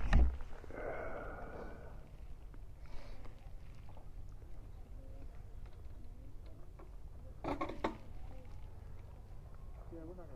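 Faint, distant voices of people talking, over a steady low rumble of wind on the microphone, with a brief knock at the start and a short louder bit of talk about three quarters of the way in.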